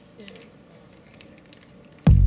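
Faint, scattered soft clicks and squishes of wet cat food being squeezed from a pouch onto a plastic plate as a cat starts eating.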